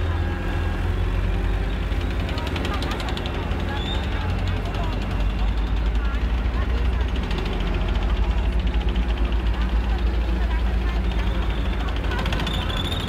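Deep engine rumble of heavy vehicles passing in a military parade, taking on a rapid, even throbbing from about halfway through, over crowd voices.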